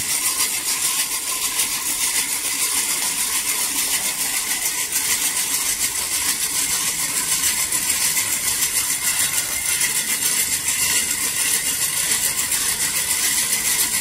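Hand-cranked forge blower turning steadily, a continuous whir with a fast, even rattle from its gearing, blowing air into the charcoal fire that heats the joint of a bandsaw blade being joined.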